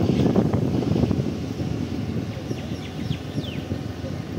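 Wind buffeting the microphone over the rumble of a moving vehicle, loudest in the first second and easing after. A few short, high, falling chirps sound near the end.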